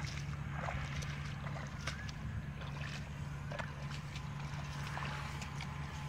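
Bare feet wading through shallow floodwater and mud, with scattered small splashes. Underneath is a steady low hum, and a few short faint rising chirps come and go.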